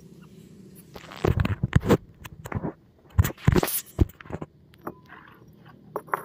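Irregular knocks and scrapes from bowls and utensils being handled on a concrete floor, several of them sharp, bunched between about one and four and a half seconds in.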